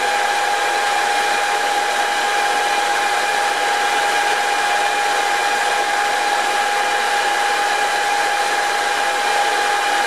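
Small metal lathe running steadily with a constant whine from its motor and drive while turning a large cylindrical workpiece with a carbide insert tool.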